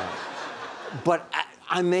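A man talking, with a brief breathy chuckle in the first second before the words resume.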